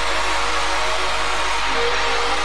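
Old-skool rave dance music: a dense, noisy rushing wash over a few held tones, with a faint steady beat about twice a second.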